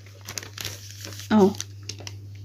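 Paper sewing-pattern pieces rustling and crinkling as they are handled, a quick run of small irregular crackles.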